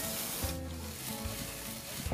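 Burgers and sausages sizzling on a grill, over background music.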